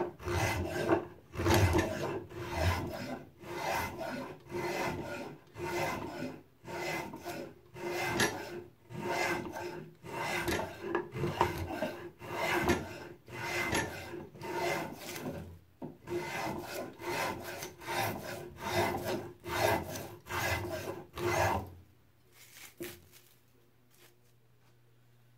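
A spokeshave cutting shavings from a wooden dowel in repeated strokes, about one every three-quarters of a second, tapering the end of the stick. The strokes stop near the end.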